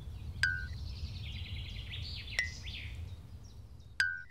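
Cartoon outdoor ambience of birds chirping and trilling over a low rumble. Sharp pops cut in at about half a second in, again at about two and a half seconds, and once more at the very end.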